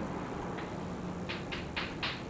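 Chalk scraping on a blackboard as a word is written: a quick run of short strokes, about four a second, starting a little over a second in.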